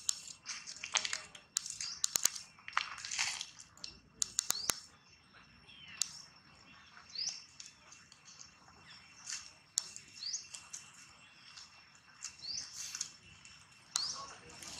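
Small birds chirping: short rising chirps repeat every second or so, over two faint steady high tones. Sharp clicks and brief rustling bursts come mostly in the first few seconds.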